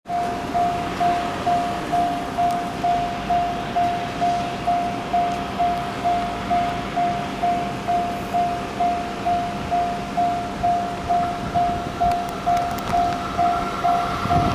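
Railway level crossing warning bell ringing steadily, a single tone struck about twice a second, signalling that a train is approaching.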